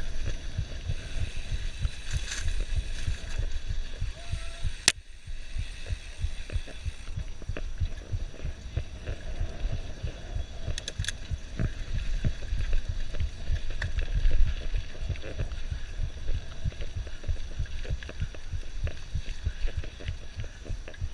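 Mountain bike descending a rough dirt trail: a dense, uneven run of low thumps and knocks as the bike and the rider-worn camera jolt over the ground, with a sharp click about five seconds in.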